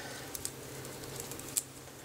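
Faint handling noise from small cooler accessories, wire fan clips and a fan cable, as they are handled and set down: a few light clicks, the clearest about one and a half seconds in, over low room hiss.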